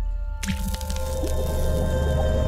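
Outro logo sting: held musical tones over a deep bass swell, with a wet splat sound effect about half a second in.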